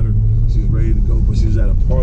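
Cabin noise in a moving Chevrolet Corvette C7: a steady low drone from its V8 engine and road rumble, under a man's voice.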